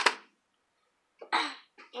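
A single short cough from a boy about a second and a half in, with near silence before it.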